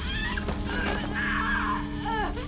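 A boy's high-pitched cries of pain, wavering up and down, with a longer cry in the second half, over a low sustained music drone. The cries come from a magical procedure that the characters warn will be very painful.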